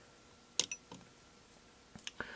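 Two clicks of buttons pressed on a home-built MIDIbox Sequencer V4's front panel, a sharp one about half a second in and a softer one just after, over low room hiss.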